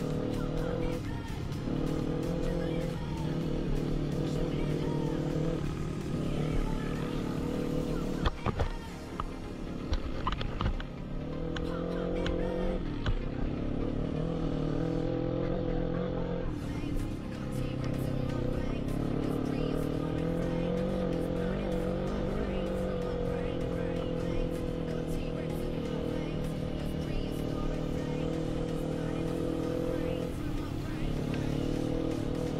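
Quad bike engine running and revving as it climbs a rough track, its pitch rising and falling with the throttle, with several sharp knocks and clatters from the machine going over stones about eight to eleven seconds in. Music plays along with it.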